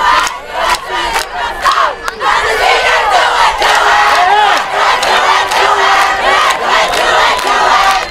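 High school football crowd yelling and cheering during a running play, many voices shouting at once, with sharp knocks scattered through.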